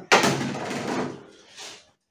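A sudden knock, followed by a rush of noise that fades over about a second, with a smaller sound near the end.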